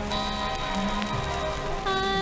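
1940s big band dance orchestra playing held, sustained chords, the notes shifting a few times. It comes from an old radio transcription, with crackle and surface noise under the music.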